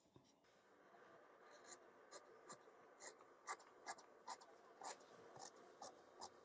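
Tailor's shears cutting through shirt fabric on a table: a run of faint, short snips, a little over two a second, beginning about a second and a half in.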